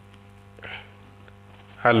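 Steady low electrical mains hum picked up in the recording, heard plainly in the pause between words.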